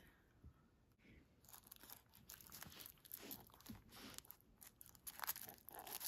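Faint crinkling and rustling of tissue paper as a leather loafer stuffed with it is handled. Almost silent at first, then irregular soft crackles from about a second in, a little louder near the end.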